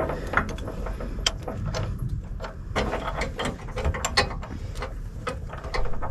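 Caravan safety chain being fitted to a tow bar: steel chain links and fittings clinking, with irregular small clicks and taps.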